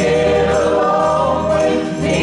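Mixed group of men and women singing a gospel hymn together in harmony through handheld microphones, with long held notes.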